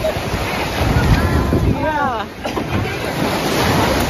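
Choppy lake waves breaking and washing up on a sandy beach, with wind buffeting the microphone. A voice calls out briefly about halfway through.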